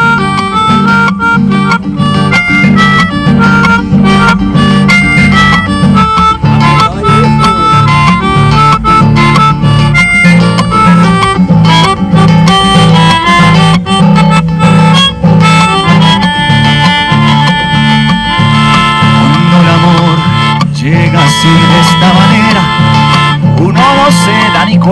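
Nylon-string classical guitar strumming steady chords under a melodica playing a melody of held notes: the instrumental introduction to a song, without singing.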